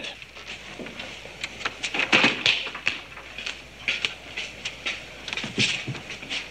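Irregular soft clicks, knocks and rustles of someone moving about, ending with a cloth curtain being pulled aside.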